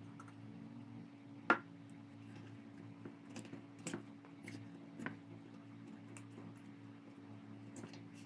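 Wooden spoon mixing wet ground ginger through halved limes in a stainless steel bowl: faint squishing with a few light clicks, and one sharper knock about a second and a half in. A low steady hum runs underneath.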